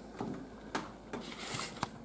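Faint handling noises at a table: a few soft clicks and a brief rustle over a quiet room.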